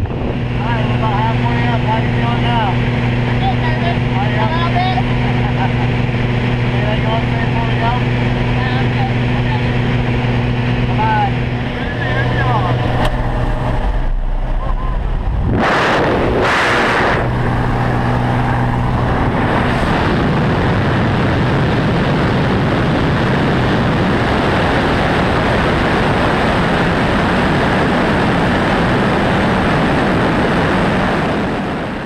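Single-engine propeller plane droning steadily, heard from inside the cabin while climbing to jump altitude. About halfway through, loud bursts of wind noise, and for the last third a steady rush of wind mixed with the engine as the door stands open for the jump.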